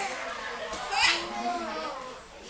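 A baby's voice babbling and vocalizing, with a short, high rising cry about halfway through.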